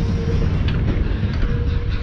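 Fairground ride music and jingles played over the ride's speakers, heard with heavy wind rumble on the microphone as the ride moves.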